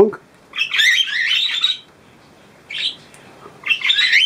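Small pet parrots in an aviary chattering and squawking in high, warbling calls. There is one long burst of about a second starting half a second in, then shorter calls near three seconds and again at the end.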